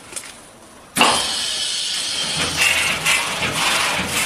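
Fully pneumatic stencil cleaner starting up about a second in: a sudden, loud, steady hiss of its air-driven wash cycle, which keeps running.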